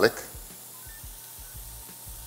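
Faint, steady sizzle of diced red onion sautéing in oil in a stainless steel pan while minced garlic is tipped in.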